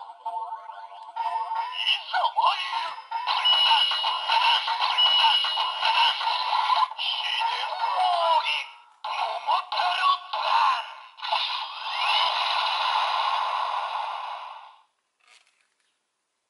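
DX Tiguardora toy sword's electronic sound unit playing a sung, voiced jingle over music through its small speaker, thin and without bass, with a few short breaks. It stops near the end.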